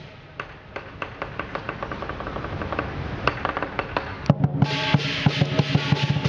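Chinese lion dance percussion: drum and cymbals. It starts with sparse, quieter beats, then a loud strike about four seconds in brings back dense, steady drumming with the cymbals.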